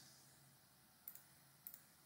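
Two faint computer mouse clicks about half a second apart, against near silence.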